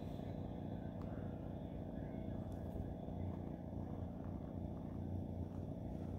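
A steady, low outdoor rumble with no distinct events.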